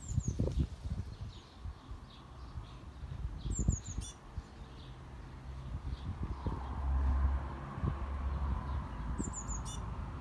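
Small birds chirping: a quick cluster of short, high calls about three and a half seconds in and another near the end, with fainter calls between. Low rumbles and knocks run underneath.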